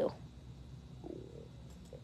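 A woman's voice trails off, then quiet room tone with a faint low murmur about a second in.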